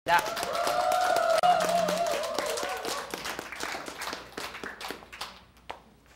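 A group clapping, with a voice holding a last sung note with vibrato for about the first three seconds; then the clapping thins out and dies away.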